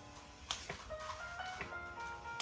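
Quiet background music: a simple, tinkly melody of single clear notes, with a few sharp ticks about a second apart.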